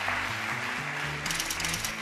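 Game-show suspense music cue of held low synth notes with a shimmering wash, joined in the second half by a rapid run of high electronic ticks as the answer's letters cycle on screen before the reveal.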